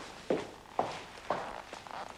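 Footsteps walking at an even pace, about two steps a second.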